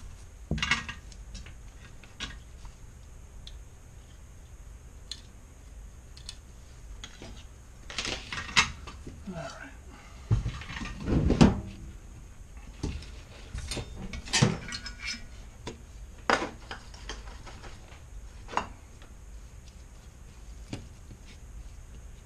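Intermittent clicks and clinks of small metal hand tools and a circuit board being handled and set down on a workbench, with a cluster of louder knocks about ten to twelve seconds in.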